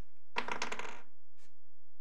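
Paper pages being riffled or turned: a brief, dense rattle of quick clicks lasting about half a second, a little after the start. A steady low hum runs underneath.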